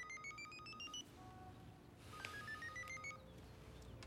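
Cell phone ringtone: a quick run of electronic beeps climbing in pitch, heard twice, with a few lone beeps between the runs.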